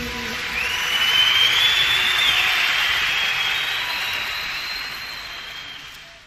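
Audience cheering with a whistle at the close of a live song, swelling about a second in and then fading out.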